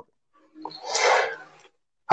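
A single breathy burst of noise from a person, rising and falling over about a second, like a sigh, sharp exhale or sneeze into the microphone. It comes through video-call audio that cuts to dead silence on either side of it.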